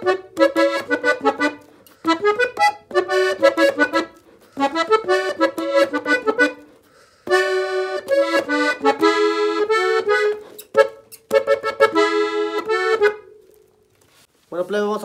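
Farinelli piano accordion playing a quick ornamented melody in short phrases with brief pauses between them, ending on a held note that fades out near the end.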